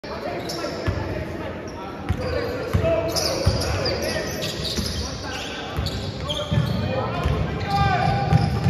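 Basketball bouncing on a hardwood gym floor during play, with short high squeaks of sneakers and voices calling out, echoing in a large gym.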